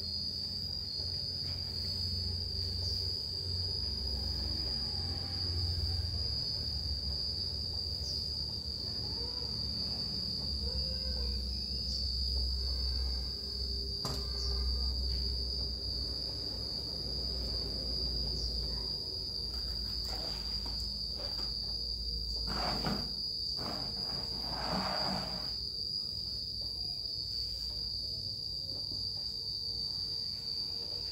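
A steady, high-pitched insect drone runs without a break. A low rumble sits underneath, and a few brief rustling or scraping sounds come about two-thirds of the way through.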